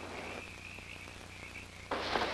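Faint, steady high-pitched trilling of a night-time animal chorus over film-soundtrack hiss and a low hum; the trill cuts off suddenly near the end.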